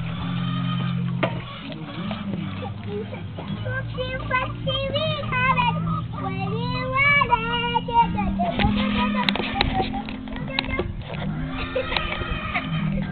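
Young children's high-pitched voices, babbling and squealing, busiest from about a third of the way in to two-thirds through, over a steady low background.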